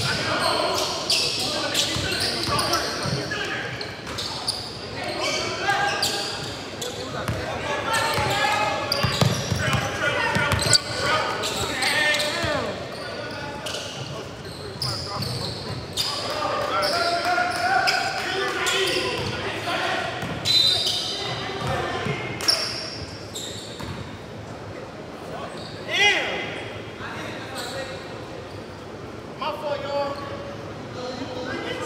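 Basketball game on a hardwood gym floor: the ball bouncing and thudding amid indistinct shouts from the players, echoing in the large hall.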